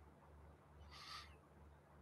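Near silence: faint room tone with a low steady hum, and one brief, soft high-pitched sound about a second in.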